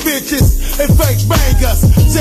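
Hip hop track playing: a beat with held deep bass notes and repeated drum hits, with rapped vocals over it.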